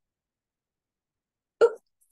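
Dead silence, then a woman says a short "Oh" near the end.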